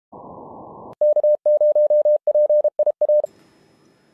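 A short burst of muffled static hiss, then a single steady mid-pitched tone keyed on and off in short and long elements, Morse code, for about two seconds, ending in a faint hiss.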